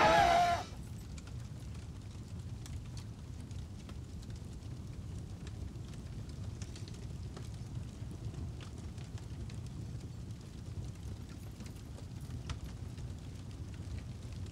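Brief laughter at the very start, then a steady low fire rumble with faint scattered crackles, a sound effect under a flaming title card.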